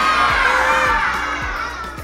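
A group of children cheering in one long shout over an upbeat intro music track with a steady beat, both gradually trailing off.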